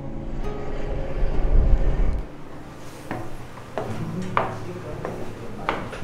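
Wind rumbling on the microphone outdoors, cutting off about two seconds in. Then footsteps climbing metal stairs, a few single knocks spaced roughly a second apart.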